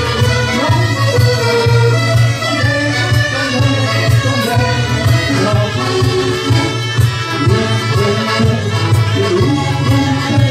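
Live folk dance tune played on accordions over a steady low drone.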